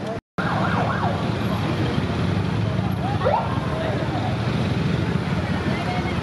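Street traffic noise from motorcycle engines running in a slow-moving crowd, steady throughout. A couple of short rising wails cut through, one near the start and one about three seconds in.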